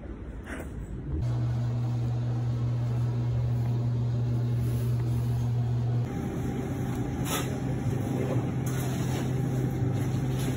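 A steady, low mechanical hum with a constant pitch that starts abruptly about a second in. About six seconds in it switches to a different, noisier hum.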